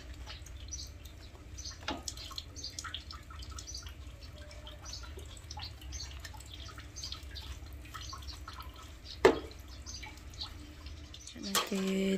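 Dishes being washed by hand in a tub of water: water sloshing and dripping, with bowls and plates clinking against each other. There is one sharper clatter about nine seconds in.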